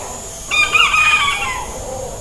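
A rooster crowing once, a single wavering call about a second long that starts about half a second in and falls away at the end.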